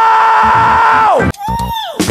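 A man's long, high-pitched "Ohhhh!" scream, held at one pitch and then falling away just over a second in, followed by a shorter rising-and-falling yell near the end.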